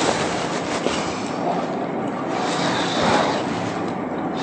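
Chalk scratching on a blackboard as a circle is drawn, heard over a steady, fairly loud hiss.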